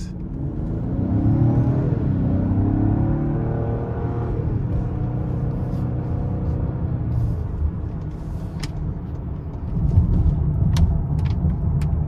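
Lincoln Aviator's 3.0-litre twin-turbo V6 accelerating hard in Excite mode, heard from inside the cabin. Its pitch rises, drops back about four seconds in and climbs again, and a deeper rumble swells near the end.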